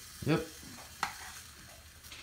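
Egg-soaked bread sizzling in hot oil in a frying pan, with a single sharp tap about a second in.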